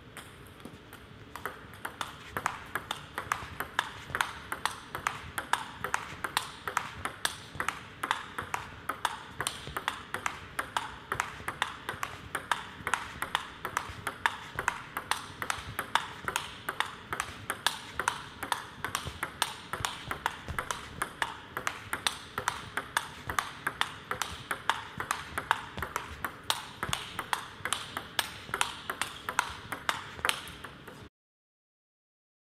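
Table tennis ball clicking back and forth off the bats and the table in one long, unbroken rally, several hits a second in an even rhythm. It is a controlled drill rally at about 60% pace.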